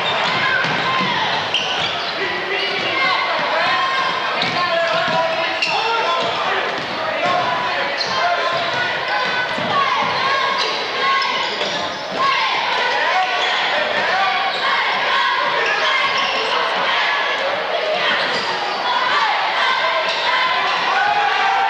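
A basketball bouncing on a hardwood gym floor during play, over steady crowd voices and shouts.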